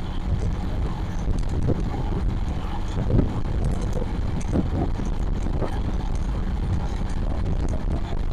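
Suzuki motorcycle engine running while riding at road speed, under a steady rumble of wind on the microphone.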